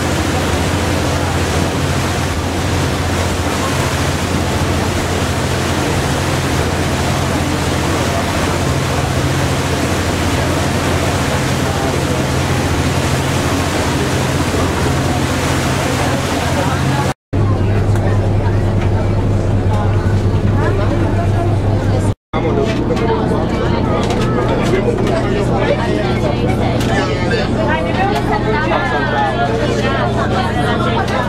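Passenger ferry's engine running with a steady low hum, under a loud rush of wind and water noise for about the first seventeen seconds. After two short cuts the engine hum is heard from inside the cabin, with passengers talking over it.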